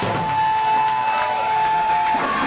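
A live rock band's final note held as one steady high tone, with the crowd cheering underneath as the song ends.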